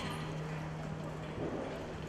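A cutting horse moving in arena dirt as it works a cow, with hoofbeats. A low steady tone is held underneath and stops about a second and a half in.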